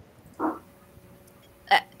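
A pause in speech with one brief vocal sound from a person about half a second in; speech starts again near the end.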